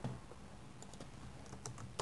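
A few faint, spaced-out keystrokes on a computer keyboard as code is typed into a text editor.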